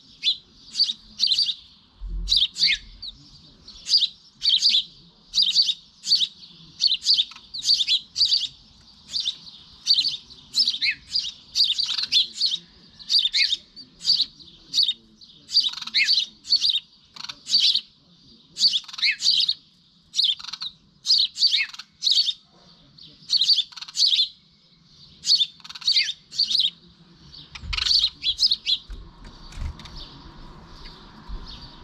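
House sparrow chirping repeatedly: short, sharp chirps one to two a second, often in quick pairs, stopping near the end.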